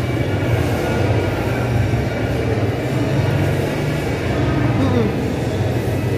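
Ambience of a busy covered market hall: a steady low hum under indistinct background chatter.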